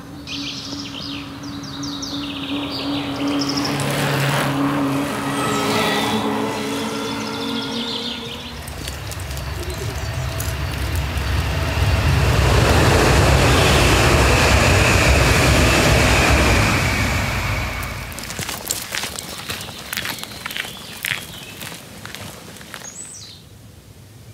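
Road traffic passing: vehicle noise swells to its loudest in the middle and then fades away, with short bird chirps in the first few seconds.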